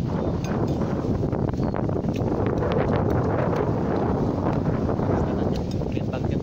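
Wind buffeting the microphone in a steady, heavy rumble, with a few light clicks scattered through it.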